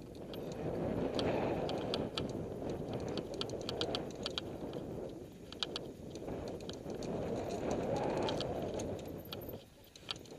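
Mountain bike rolling fast down a dirt singletrack, heard from a helmet-mounted camera: a rushing noise of tyres on dirt and wind on the microphone, overlaid with quick irregular clicks and rattles from the bike over bumps. The rushing swells twice, in the first few seconds and again around eight seconds.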